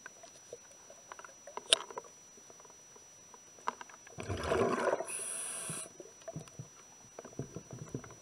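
Underwater sound of a diver's scuba regulator: a rush of exhaled bubbles about four seconds in, then a short high hiss of breath drawn through the regulator. Faint scattered clicks and ticks run through the rest.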